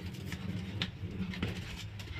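Whole milkfish being handled and rinsed by hand in a plastic colander in a sink: scattered light clicks and knocks over a low steady hum.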